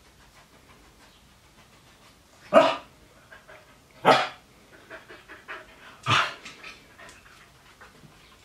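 Finnish Spitz barking three times, about a second and a half to two seconds apart, with quieter short sounds in between.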